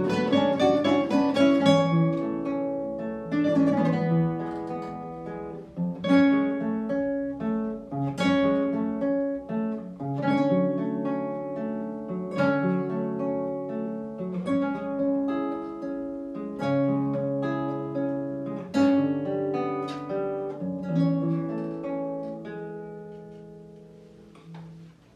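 A quartet of nylon-string classical guitars playing a piece together, with plucked melody over chords and strong chords struck about every two seconds in the second half. The music thins out near the end, and the last chord dies away as the piece closes.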